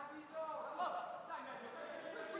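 Faint, distant voices of futsal players calling out on an indoor pitch in a large hall.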